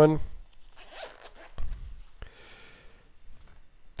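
Zipper of a knife pouch being drawn open, a short rasp, with light handling noise and a soft knock before it as the pouch is handled.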